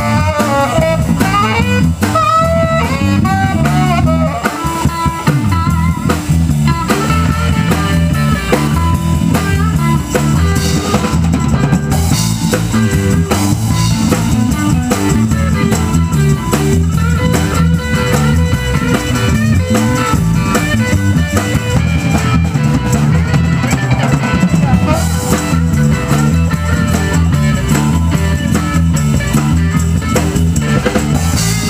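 Live blues band playing: a saxophone melody over a walking electric bass line and a drum kit, the melody most prominent in the first several seconds.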